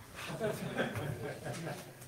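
Quiet, indistinct talking in a meeting room, too faint to make out.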